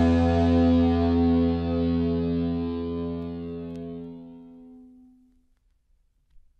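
The final chord of a punk rock song, played on distorted electric guitar, held and slowly fading away until it dies out about five seconds in.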